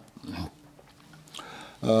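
A pause in a man's lecture: a short low throaty vocal sound in the first half second, then a faint lull, and near the end he starts speaking again with a long drawn-out hesitation sound, "eo".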